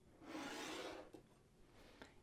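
A coffee mug sliding across a tabletop: one faint, smooth scrape lasting under a second.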